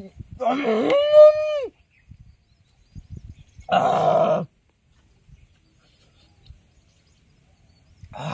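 A man's wordless vocal exclamations while eating. The first is long, rising and then held on one pitch, about half a second in. A shorter one follows at about four seconds.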